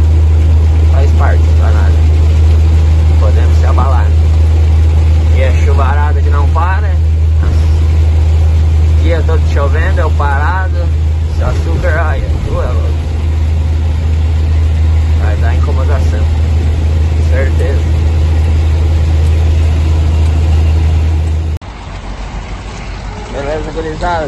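Truck engine running, heard from inside the cab as a loud, steady low drone, with intermittent voices over it. The drone cuts off abruptly near the end.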